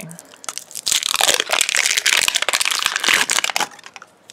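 Crinkling plastic wrapper being peeled and pulled off a small toy ball, a dense crackle of many small clicks starting about a second in and stopping just before the end.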